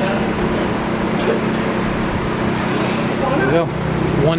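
A steady mechanical hum of shop machinery, with a voice heard briefly and faintly near the end.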